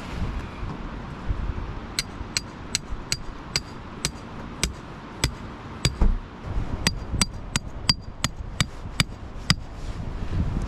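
A hammer striking a metal tent peg into the ground, a steady run of sharp ringing knocks about two to three a second starting about two seconds in. The knocks pause briefly around the middle for a dull thump, then carry on.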